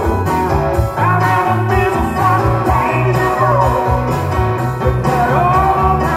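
Live rock band playing a song with singing, drums, electric guitar and keyboards, heard through the PA from the crowd.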